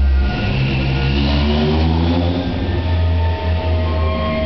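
Street barrel organ playing a tune, with a vehicle passing by on the street over the music in the first half.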